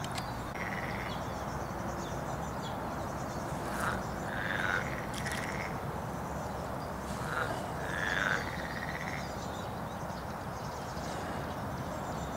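Steady outdoor background noise with a few short animal calls: one about a second in, then a pair around four to five seconds in, and another pair around seven to nine seconds in.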